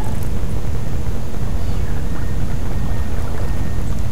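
Steady low rumble of wind buffeting the microphone, with a hooked catfish splashing at the surface beside the boat.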